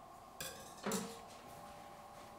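Two light clinks of utensils against a china plate, about half a second apart, over a faint steady hum.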